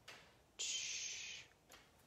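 Paintbrush bristles stroking across a canvas, laying a short dash of acrylic paint: a soft scratchy hiss just under a second long, about half a second in.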